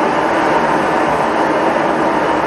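Loud, steady rushing roar of a gas burner turned up high to bring a pot of corn to the boil.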